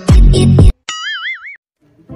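Electronic dance music with a heavy beat cuts off suddenly less than a second in, followed by a short 'boing' sound effect with a wobbling pitch, then a brief silence.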